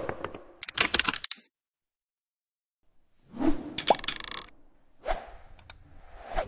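Cartoon sound effects for an animated graphic: a quick run of clicks about a second in, a short silence, then a swelling sound that ends in a pop near the four-second mark, and a shorter swell with small clicks near the end.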